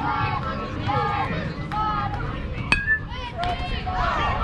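Baseball struck by a metal bat: one sharp ping with a brief ringing tone about three-quarters in, as the batter puts the ball in play. Spectators and players call out throughout.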